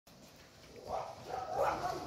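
An animal whining in a few short, pitched calls that start about a second in and grow louder toward the end.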